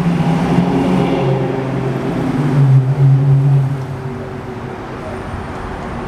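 Street traffic: a motor vehicle's engine giving a steady low drone that is loud for the first few seconds and fades out about four seconds in, over a background of road noise.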